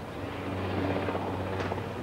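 Helicopter flying low past, a steady low drone of engine and rotor that grows gradually louder.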